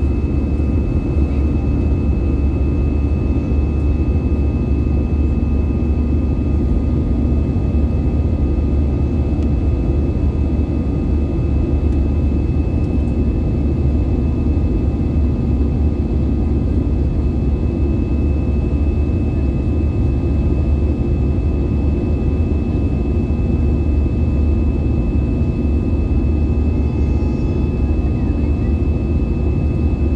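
Airbus A320neo cabin noise in flight: a steady, unbroken rumble of engine and airflow, with a few faint constant high tones over it.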